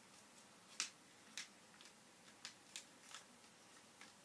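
Folded origami paper being creased by hand as the model is folded in half: several faint, short paper crackles, the sharpest about a second in.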